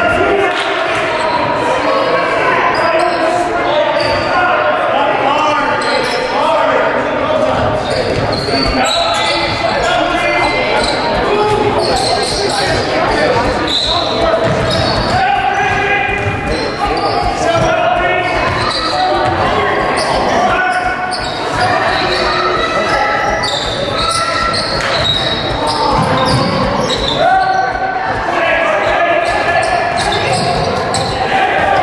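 Basketball game in a large echoing gym: a ball bouncing on the hardwood court amid indistinct shouts and chatter from players and spectators.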